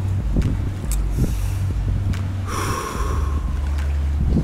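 A person's short breathy snort about two and a half seconds in, over a steady low rumble of wind on the microphone.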